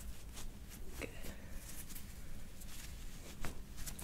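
Faint handling sounds from a chiropractic treatment: soft rustles and a few light clicks of hands, skin and paper towel at the table, with a slightly sharper pair of clicks near the end, over a low room hum.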